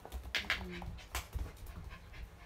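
A pet dog whimpering, with several short sharp clicks.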